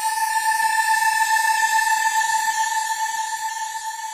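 Electronic logo sound effect: one steady high tone held throughout, with many quick sweeping pitch glides and a hissing shimmer around it, easing slightly toward the end.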